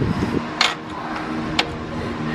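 A steady background hum of a few low fixed tones, with two short sharp clicks about a second apart.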